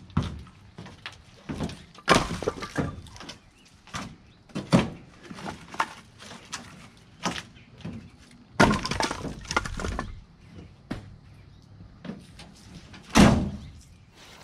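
Split cherry firewood being tossed from a pickup bed onto a pile, the logs landing in irregular knocks and clatters as they strike each other, with a longer run of tumbling clatter about nine seconds in and a loud knock near the end.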